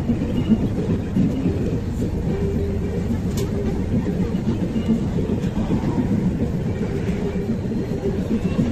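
Military ATVs and light off-road vehicles driving past in a column, a steady drone of engines and tyres with a low hum running through it.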